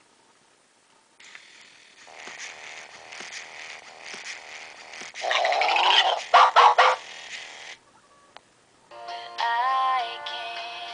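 i-Dog Amp'd speaker toy switched on, playing its own electronic start-up sounds with a loud warbling burst about five to seven seconds in. After a short pause, music from the connected iPod starts through its small speaker near the end.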